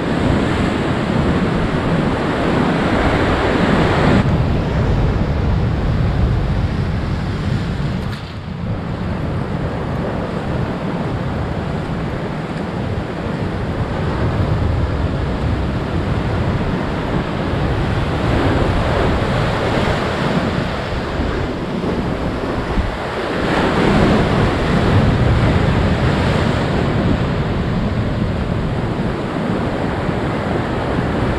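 Heavy ocean surf breaking on the shore: a continuous wash of waves that swells and eases, dipping briefly about eight seconds in and surging again near the three-quarter mark.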